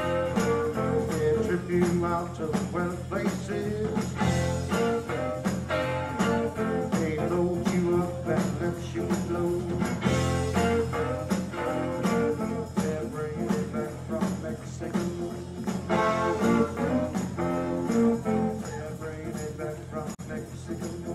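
Live band playing a blues-rock instrumental passage with guitar over a steady drum beat.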